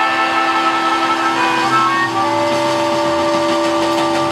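Live band holding one long sustained chord, with a harmonica playing a steady held note on top; the chord shifts slightly about halfway through.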